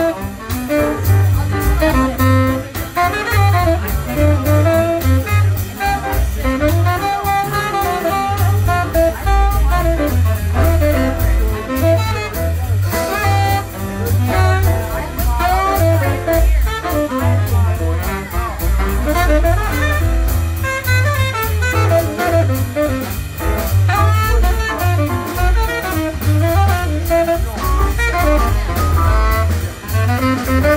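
Small jazz combo playing live: a saxophone carries moving melodic lines over grand piano and a prominent double bass, with drums behind.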